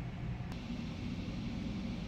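Steady low background hum of room tone, with a single faint click about half a second in.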